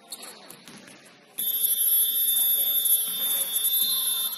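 Basketball scoreboard buzzer sounding: one loud, steady electronic tone that starts abruptly about a second and a half in and holds for about three seconds.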